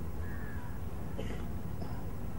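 A crow cawing in two short calls over a steady low rumble of open-air ambience.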